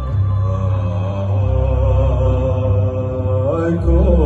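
Two amplified cellos playing live in an arena: a slow, wavering melody over deep held bass notes. The bass note changes about a second and a half in and again near the end, where the melody slides upward. The sound is heard from far back in the hall.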